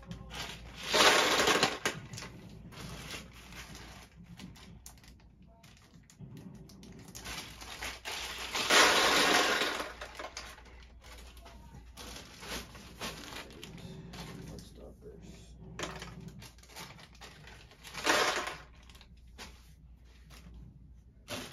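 Small plastic bottle stoppers and caps poured from a plastic bag into a plastic storage drawer: a noisy rush in three spells, about a second in, about eight seconds in (the longest, about two seconds) and near the end.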